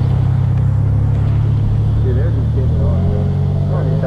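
Suzuki DR-Z400 supermoto's single-cylinder four-stroke engine idling steadily, its low note shifting up a little about three seconds in. Faint voices talk over it in the second half.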